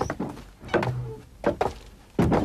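A series of dull thuds, about one every three-quarters of a second, with a brief low hum between the second and third.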